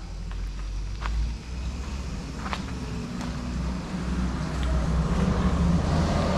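A motor vehicle's engine running nearby as a steady low rumble, growing louder over the last couple of seconds, with a few faint ticks.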